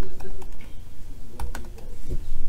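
Typing on a MacBook's laptop keyboard: a handful of irregular key clicks.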